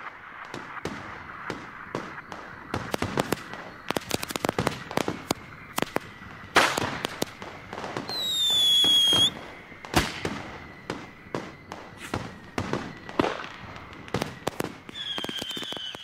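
Firecrackers going off in a rapid, irregular string of sharp bangs, with a whistling firework giving a high whistle that falls slightly in pitch for about a second midway through, and another brief whistle near the end.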